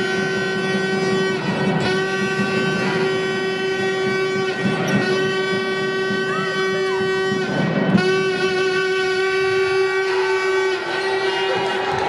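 A steady, horn-like tone with many overtones, held for about three seconds at a time with a short break between blasts, over the court noise of a basketball game. A few short squeaks, likely sneakers on the hardwood floor, come around the middle.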